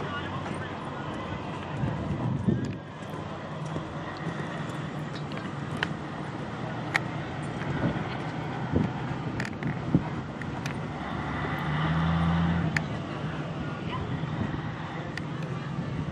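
Outdoor horse-show arena ambience: indistinct voices in the background, a horse cantering on sand footing, and scattered sharp clicks. A brief low hum, the loudest sound, comes about three-quarters of the way through.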